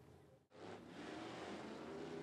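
Faint engines of a pack of dirt track race cars running on the oval, their note rising as they accelerate. The sound drops out briefly about half a second in, at a cut, before the engines come in louder.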